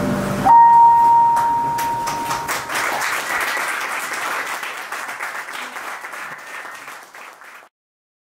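The last held notes of keyboard and upright bass die away, then a small audience claps, opening with one long whistle. The applause thins out and cuts off shortly before the end.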